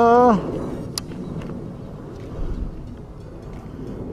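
The last of a man's drawn-out shout of 'hey', falling in pitch, then a steady low rumble of wind and water on the open lake with a single sharp click about a second in.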